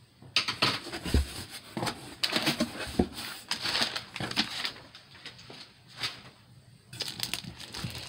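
A cardboard shipping box being opened by hand, with flaps folded back and a paper packing slip and plastic-wrapped contents handled: irregular scraping, rustling and crinkling. It eases off for a couple of seconds, then picks up again near the end.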